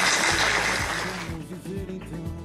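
Audience applause fading away over the first second and a half, with background music starting underneath.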